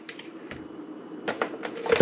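A few light clicks and taps of a plastic fork against a glass jar of minced garlic as it is scooped out, over quiet room tone.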